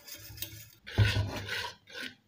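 Metal kitchen utensil scraping and rubbing against cookware while stirring, in a few rough strokes, the loudest about a second in.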